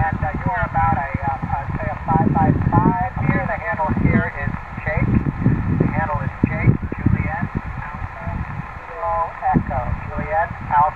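A distant ham radio operator's voice received on single-sideband through a portable transceiver's speaker: thin, narrow-band speech that is not clear enough to make out the words, over a low rumble of background noise.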